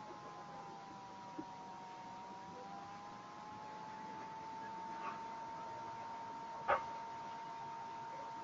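A faint, steady, whistle-like tone that wavers slightly in pitch during the first few seconds over a low hiss. There are a couple of small clicks and one sharper click about two-thirds of the way through.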